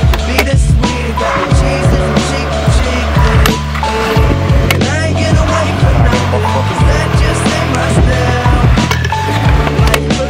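Hip-hop backing track with a heavy bass line and no vocals. Over it, a stunt scooter's wheels roll on stone paving, with repeated sharp clacks of the deck and wheels hitting the ground.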